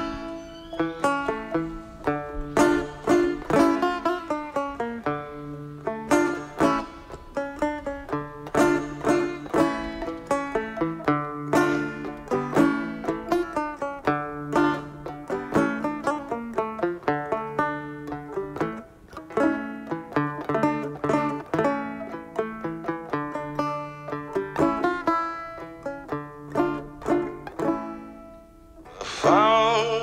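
Banjo played solo: a steady run of plucked notes over a repeating low note, a song's instrumental introduction. A man's singing voice comes in right at the end.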